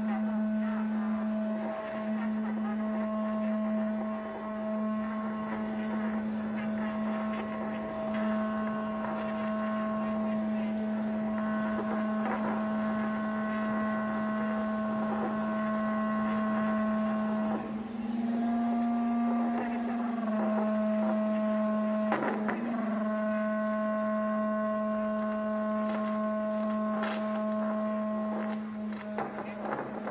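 A steady, low buzzing hum held on one pitch. It steps slightly higher for about two seconds near the middle, then drops back. A couple of faint knocks come through underneath.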